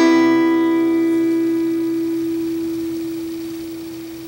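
Final chord of a Taylor acoustic guitar ringing out and fading slowly. One note sustains longest as the rest die away.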